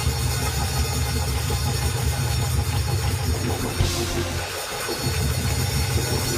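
Live church instrumental music: sustained deep bass notes played under the preaching, breaking off briefly about four and a half seconds in.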